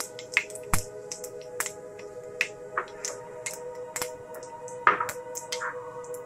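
Cumin seeds crackling in hot oil in a flat pan, with irregular sharp pops, over background music holding sustained notes.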